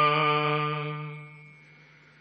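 A man's chanting voice holds the final drawn-out note of the Hukamnama recitation and fades away over about a second and a half, leaving near silence.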